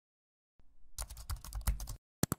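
Computer keyboard typing sound effect: a quick run of key clicks lasting about a second, starting about a second in.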